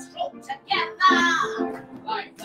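A woman singing a song live with piano accompaniment: short sung phrases over held piano chords, the loudest phrase about a second in.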